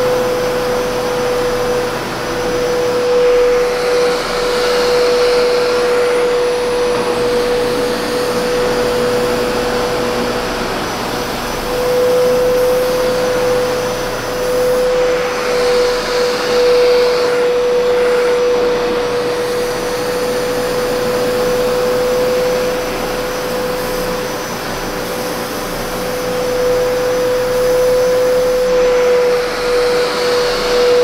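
Rug Doctor TruDeep carpet cleaner running, its suction motor giving a loud, steady whine over a rushing noise. A higher hiss swells briefly three times, about ten seconds apart.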